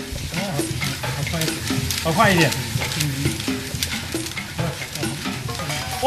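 A wooden paddle stirs rice grains through hot salt in a wok, with a steady scraping rustle and dense, irregular crackling as the grains begin to puff.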